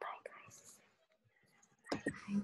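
Faint, low voices heard over a video call: a few soft words in the first second, a quiet gap, then a brief louder voice just before the end.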